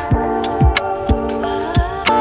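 Background music with a steady beat: deep thumps about twice a second under held chords.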